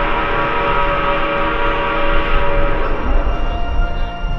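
Ballpark whistle sounding one long, loud blast with several pitches at once. It is the signal that opens the outfield seats to fans. It fades out near the end.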